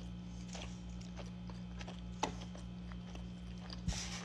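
A person chewing a mouthful of cheeseburger slider: soft wet mouth clicks and smacks, with a louder smack about two seconds in and another near the end, over a low steady hum.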